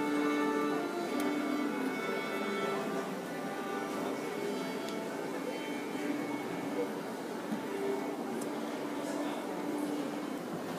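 Symphony orchestra tuning up: several instruments hold long sustained notes together, strongest in the first few seconds, then thinning out.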